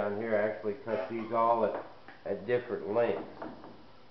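A man's low voice singing in held notes that glide up and down.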